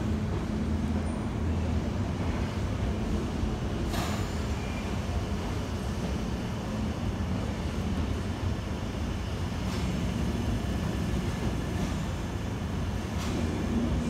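London Underground 1972 Stock tube train moving slowly along the platform: a steady low motor hum, with a few sharp clicks a few seconds apart.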